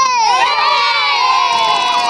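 A crowd of children shouting and cheering together, many high voices overlapping at once, loud.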